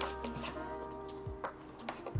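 Soft background music with sustained chords, with a few faint clicks of a cardboard box and plastic tray being handled.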